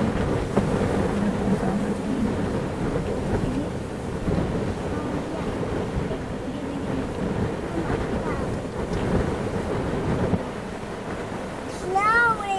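Strong gusty inflow wind of a supercell thunderstorm buffeting the microphone at an open car window, a loud, rough rumble that rises and falls in gusts and eases slightly near the end.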